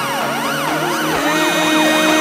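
Electro house track with a siren sound sweeping up and down about twice a second. The sweeps quicken a little past the middle, over steady held synth tones.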